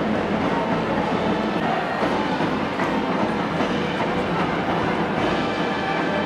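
Steady, dense crowd noise from the packed stands of a baseball stadium, continuous and even in level.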